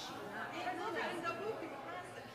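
Indistinct chatter of people talking.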